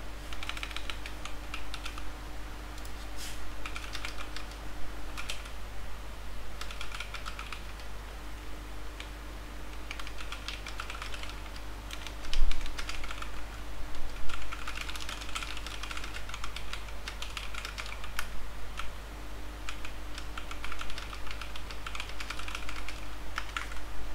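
Computer keyboard being typed on in short bursts of keystrokes with pauses between them, and one louder thump about halfway through, over a steady low electrical hum.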